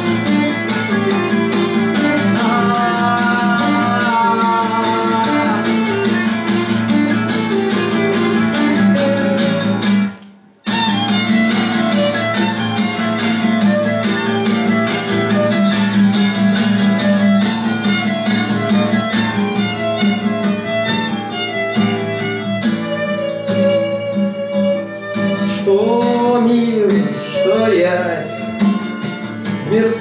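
Instrumental break of acoustic guitar and violin: the guitar strummed hard and fast while the violin plays the melody over it. The sound cuts out abruptly for about half a second around a third of the way through.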